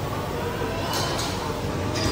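Steady rushing hum of the air-pressure ball-tube exhibit's blower, with a couple of light knocks about a second in and near the end and faint indistinct voices behind it.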